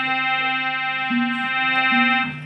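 Harmonium holding long reedy notes over a steady low drone, the melody stepping to a new note about a second in and back again near the end.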